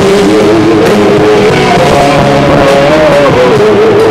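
Live rock band playing loudly: electric guitar, bass guitar and drum kit, with a sustained lead line that wavers and bends in pitch.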